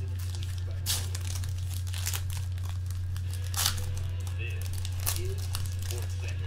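A trading-card pack being slit and torn open, the wrapper crinkling, with four sharp ripping sounds spread over the few seconds. A steady low hum runs underneath.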